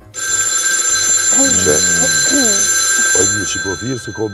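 A telephone bell ringing: one continuous electric-bell ring that starts suddenly and stops a little over three seconds later.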